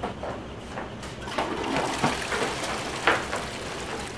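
Water rushing steadily, building from about a second in, with a few knocks and bumps over it.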